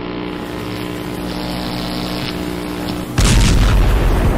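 Intro sound effects: a steady drone with held low tones, broken about three seconds in by a sudden loud explosion boom with a deep rumble.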